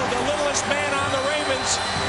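Excited yelling by male voices, high and strained, with no clear words.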